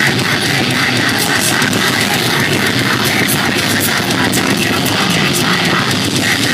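Live heavy metal band playing at full volume: distorted electric guitars and drums, with cymbal crashes cutting through at regular intervals, heard from within the crowd.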